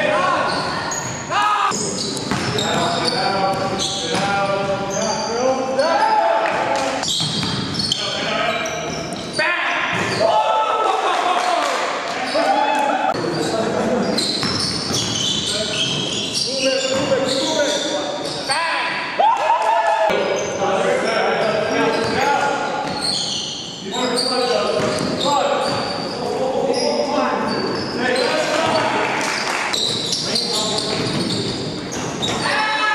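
Basketball game in a gym: a ball bouncing on the hardwood floor amid players' indistinct calls and shouts, echoing in the large hall.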